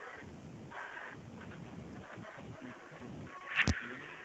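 Quiet telephone-line hiss with faint muffled sounds in the background, and a short sharp click shortly before the end.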